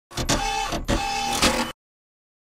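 A short mechanical whirring, clattering sound effect in two bursts of under a second each, each carrying a steady whine. It cuts off suddenly.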